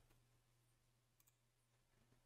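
Near silence: faint room tone with a low hum, and two faint computer-mouse clicks in quick succession a little past the middle.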